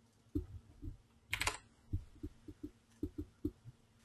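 Computer keyboard and mouse being worked: about a dozen soft, irregular taps, with one sharper click about a second and a half in.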